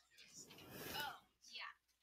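Faint, distant voices of students talking quietly to each other, a few short snatches with pauses between.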